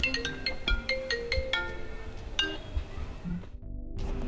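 Mobile phone ringtone playing a melody of short chiming notes, which cuts off suddenly about three and a half seconds in.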